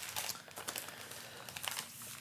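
Large sheets of thin, creased sketch paper rustling and crinkling softly and irregularly as they are lifted, shuffled and laid down on a wooden tabletop.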